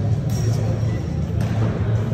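A steady low rumble with indistinct voices.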